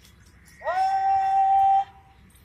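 A long, drawn-out shouted parade word of command to a rifle-armed guard of honour. It swoops up into one loud held note about half a second in and cuts off sharply after a little over a second.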